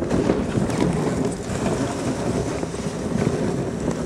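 Dogsled runners sliding and crunching over snow as a team of huskies pulls the sled: a steady grainy scraping noise with no clear beat.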